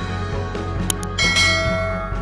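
Background music with two quick clicks just before a second in, then a bright ringing bell chime that fades out: the notification-bell sound effect of a subscribe-button animation.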